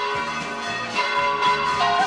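Church bells ringing, several overlapping strokes each leaving long ringing tones.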